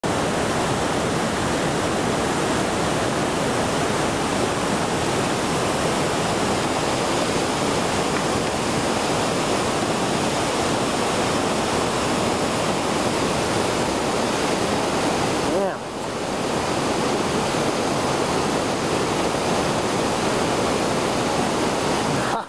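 Steady, loud rush of whitewater pouring over a steep waterfall and churning in the pool below, with one short dip in level about two-thirds of the way through.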